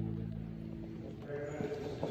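A held chord of church music dies away over the first half second. It is followed by faint rustling and low murmuring from the congregation in the pews.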